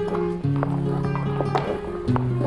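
Flamenco music with held low notes that change twice, crossed by quick sharp taps of flamenco shoes in heel-and-toe footwork (zapateado).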